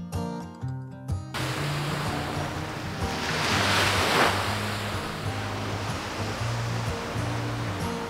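Background music with a steady bass line, joined about a second in by the rushing wash of surf on a sandy shore. The surf swells to its loudest near the middle, then settles.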